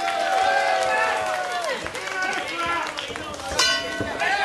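Several people shouting at once, as cornermen and spectators call out to the fighters, with one long drawn-out yell in the first second and a half. A short, loud, harsh burst cuts through near the end.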